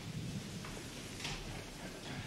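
Faint footsteps of a person walking to and stepping into a witness box, over a steady hiss.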